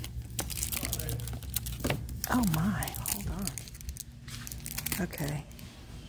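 Cellophane product packaging crinkling and crackling in short bursts as it is handled, with a brief murmur of a woman's voice in the middle.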